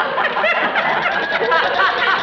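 Studio audience laughing, many voices at once.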